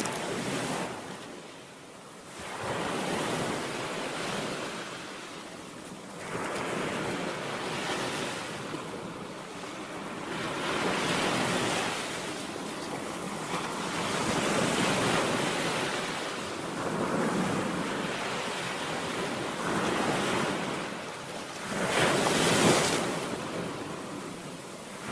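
Sea surf: waves rushing in and falling away in swells every few seconds, the loudest swell near the end.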